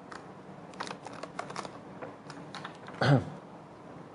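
Scattered small clicks and handling noises as a man drinks water, with one short voiced sound from him about three seconds in.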